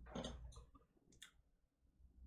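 Near silence with a few faint clicks and rustles in the first second or so, as a vinyl LP is handled and taken out.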